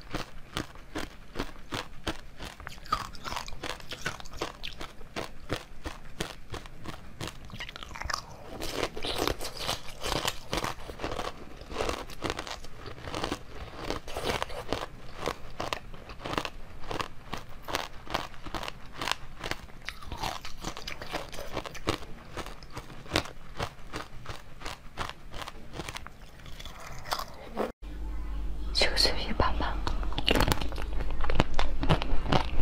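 Frozen basil-seed ice rings being bitten and chewed close to a clip-on microphone: a rapid, irregular run of crisp crunches and cracks. Near the end the sound cuts off abruptly and a louder section with a steady low hum starts.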